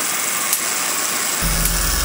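Homemade Van de Graaff generator with a pantyhose belt running with a steady hiss. Two sharp spark snaps jump between its metal domes, about half a second in and near the end: the arcs return once the grounding comb no longer drains charge from the belt. A low steady hum comes in about one and a half seconds in.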